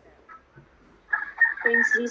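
A long, steady, high-pitched animal call starting about a second in, with a person's voice joining near the end.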